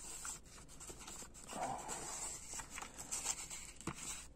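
A plastic cassette being worked out of a tight, worn cardboard sleeve: faint rubbing and scraping of card against plastic, with a few small clicks.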